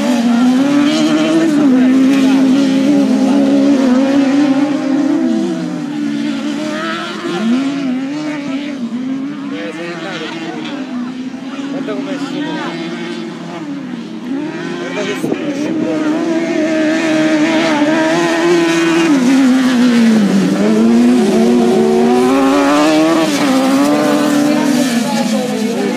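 Engines of small racing buggies on a dirt track, revving, the pitch rising and dropping with throttle and gear changes. Louder in the first few seconds and again in the last third as the cars come near, fainter in between.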